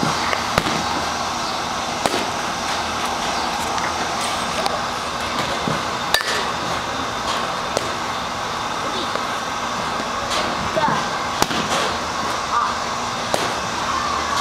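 Batting-cage ambience: a steady noisy background with voices, broken by about six sharp cracks spread through, the loudest a little after six seconds and again around eleven and a half seconds in.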